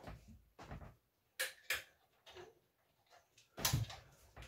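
A few short knocks and clicks in a small room: two sharp ones about a second and a half in, and a louder cluster near the end.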